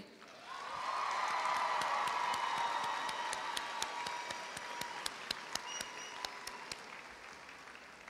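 Large audience applauding, swelling over the first couple of seconds and then slowly fading, with scattered single claps near the end.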